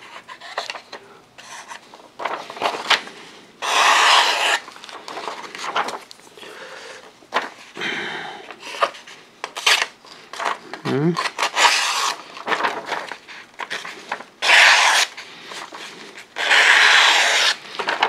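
Andre De Villiers Pitboss 1 flipper knife's blade slicing through a sheet of paper in a sharpness test: several separate rasping cuts, each about half a second to a second long, with paper crinkling and small clicks between them. The edge cuts the paper readily, judged well sharpened.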